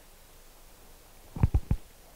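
Quiet room tone, then three quick low thumps close together about a second and a half in, picked up by a handheld microphone.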